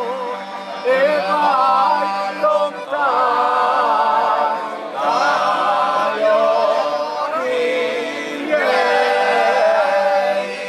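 Several older men singing a traditional folk song of the Pavia–Piacenza Apennines together, in sung phrases a few seconds long, with piano accordion accompaniment holding steady low notes underneath.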